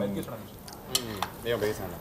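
Metal forks clinking against ceramic bowls and plates at a dining table: a few light, separate clinks.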